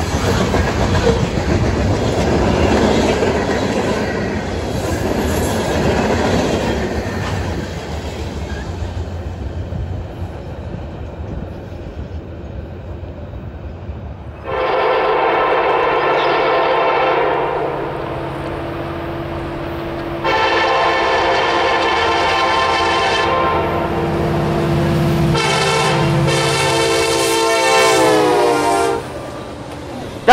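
Loaded covered hopper cars of a freight grain train roll past, with steady rumble and wheel clickety-clack. About halfway through, a diesel locomotive horn sounds in several long blasts as a fast eastbound manifest freight approaches. The horn's pitch drops as the locomotive passes, shortly before the end.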